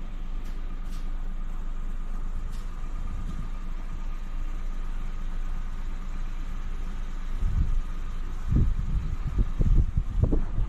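A car engine idling steadily at a tuning shop, a low even hum. In the last couple of seconds, wind buffets the microphone in uneven low rumbles.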